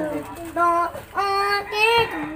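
A child singing three held notes, each a little higher than the last.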